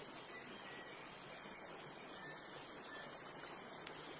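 A steady, faint, high-pitched chorus of crickets chirring, with a single sharp click near the end.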